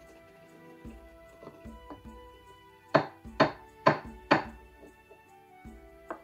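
A wooden pestle knocked against a wooden mortar four times, about half a second apart, sharp wooden knocks over background music.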